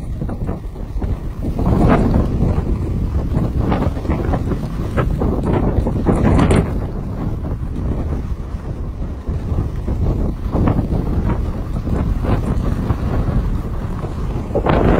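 Wind buffeting the microphone of a camera carried down a ski run, with the rushing scrape of skis on snow surging every few seconds.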